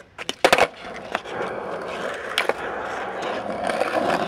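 Skateboard clacking sharply against the asphalt a couple of times about half a second in, then its urethane wheels rolling steadily over rough pavement, with one more sharp click midway.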